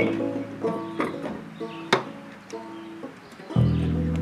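Looped plucked banjo-style accompaniment playing back on its own while he changes instruments. The deep bass layer drops out at the start and comes back strongly about three and a half seconds in. A sharp knock sounds about two seconds in.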